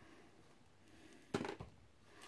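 Quiet room, with one short handling noise about one and a half seconds in as cigarette packs are picked up.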